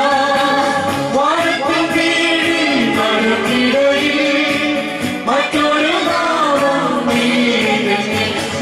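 A congregation singing a Malayalam Christian hymn together, with long held notes that slide up and down in pitch.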